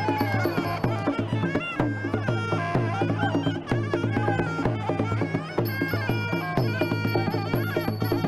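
Traditional Muay Thai fight music (sarama): a reedy Thai oboe plays a wavering, sliding melody over a steady drum beat.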